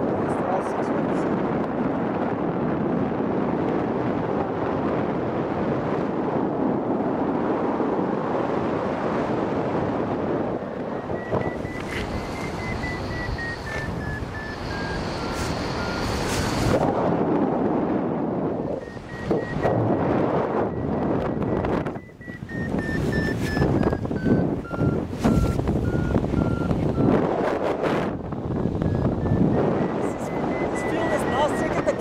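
Wind rushing on the microphone during a paraglider flight. From about a third of the way in, a paragliding variometer beeps, its pitch stepping up and down, the sound of climbing in a thermal.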